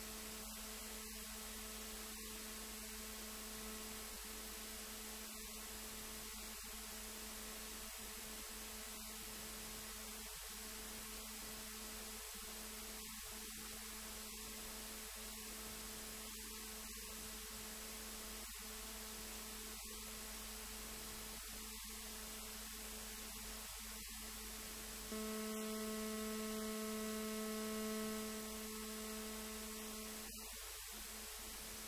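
Steady electrical hum with a stack of overtones over a faint hiss; it steps up louder for the last few seconds.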